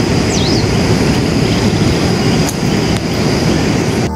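Steady roar of rushing water from Dunhinda waterfall and its river, with a brief high bird chirp about half a second in.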